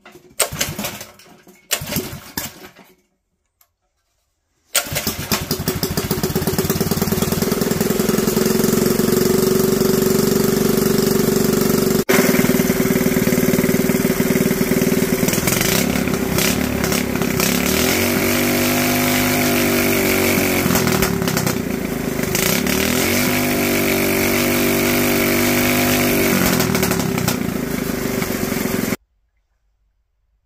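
Predator 212cc single-cylinder engine with its governor removed, pull-started: a few short bursts in the first seconds, then it catches and runs steadily. Its revs rise and fall twice as the throttle is opened and closed. The sound cuts off abruptly near the end.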